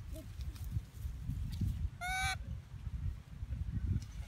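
A baby long-tailed macaque gives one short, high-pitched squeal about two seconds in.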